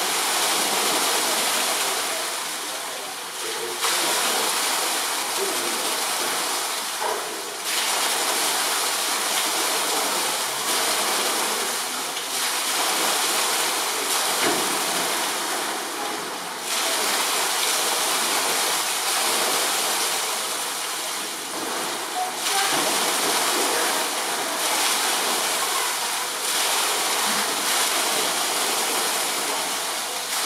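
Steady rushing of running water, its level rising and falling every few seconds.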